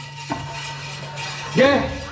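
A single sharp knock about a quarter of a second in, over a steady low hum; a man says a short word near the end.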